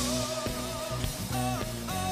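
Rock band playing a song intro: drums and bass come in with a cymbal crash as it begins, under a held, wavering melody line.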